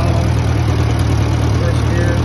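Farmall B tractor's four-cylinder engine running steadily as it drives a Woods belly mower through grass.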